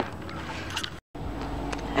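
Steady low outdoor background noise broken by a moment of dead silence about a second in. A deeper low hum follows the silence.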